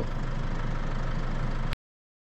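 Steady outdoor background noise with a low hum, cutting off suddenly near the end.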